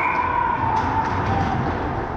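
Echoing ice hockey play in an indoor rink: skate blades scraping the ice, a few sharp stick or puck clicks about a second in, and a faint wavering high tone.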